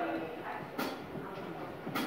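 Stage noise from a live band waiting to start a song: two sharp taps about a second apart over faint room murmur and stray instrument tones.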